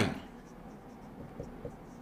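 Marker pen writing on a whiteboard: faint short strokes and small taps of the tip against the board.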